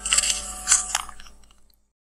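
End of a produced backing track: three crisp, crunchy noise hits over faint held tones, fading out to nothing near the end.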